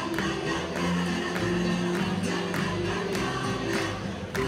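A choir singing live with an instrumental band, over a regular beat about every two-thirds of a second.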